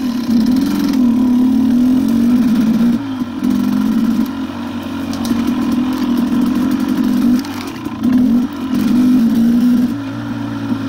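KTM dirt bike engine running under way, its note rising and falling as the throttle is opened and eased, with brief let-offs about three seconds in and again near eight seconds.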